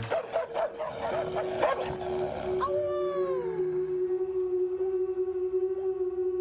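A young woman raised among dogs barking like a dog in quick short yaps, then giving one long falling whine or howl about halfway through. This is dog behaviour she learned in the kennel. A steady held tone sounds underneath.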